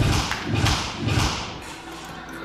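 Two soft-tip darts hitting an electronic dartboard in quick succession, about half a second apart, each hit a sudden thud.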